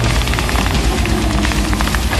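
Studebaker M29 Weasel tracked snow vehicle driving through deep snow: its straight-six engine running under load, with a rapid clatter from the tracks.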